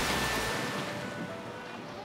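Rushing water noise from a splash-down into a training pool, fading away over about a second and a half, with soft background music underneath.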